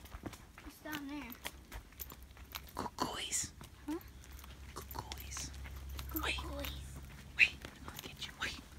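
Faint, indistinct murmured voices with scattered clicks and footsteps on a trail, over a low steady hum that fades out near the end.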